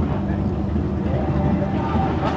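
Harley-Davidson WLA's 45 cubic-inch flathead V-twin running steadily.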